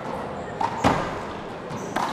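A wallball being played with gloved hands in a large hall during a serve. There are a few sharp slaps of the small rubber ball, the loudest a little under a second in and another near the end.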